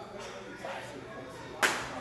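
A single sharp slap of a boxing glove striking a leather focus mitt, about one and a half seconds in.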